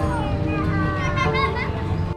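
Outdoor crowd chatter, with children's high voices talking and calling out over a steady background rumble.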